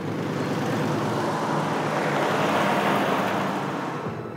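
A vintage car driving by on a dirt road, its engine running and tyres rolling, growing louder to a peak about three seconds in.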